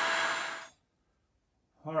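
Handheld electric heat gun blowing, a steady rush of air with a faint steady whine; it trails off and stops under a second in, leaving near silence before a man says "all right" near the end.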